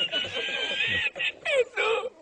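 A man laughing hard: a long high-pitched squealing laugh, then a few short squeaks falling in pitch, broken by catches of breath.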